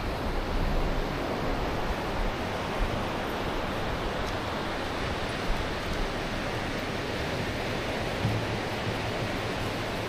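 Ocean surf washing onto a beach: a steady, even rush of breaking waves.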